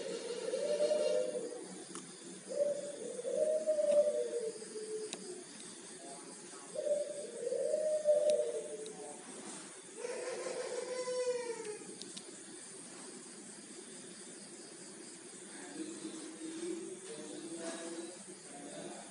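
Zebra dove (perkutut) cooing: four short phrases of wavering coos, each about one and a half to two seconds long, coming every few seconds over the first twelve seconds.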